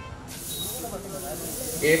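A steady hiss that comes in abruptly shortly after the start, over faint voices; a man's voice starts near the end.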